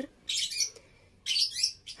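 Birds chirping in two short spells about a second apart.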